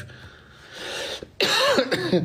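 A man coughs into his fist: a breath in, then one sudden loud cough about one and a half seconds in.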